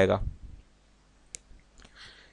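A single sharp computer mouse click about halfway through, followed by a couple of fainter ticks, against an otherwise quiet background.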